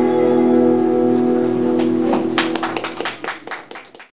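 A live folk song's last chord held and ringing out on acoustic guitar and voice, then audience applause breaking out about two seconds in and fading away at the end.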